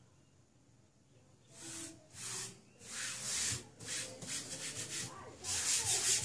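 A palm sweeping and rubbing over cotton fabric laid on a glue-coated EVA foam sheet, smoothing it flat: repeated swishes about two a second, starting about one and a half seconds in and growing louder.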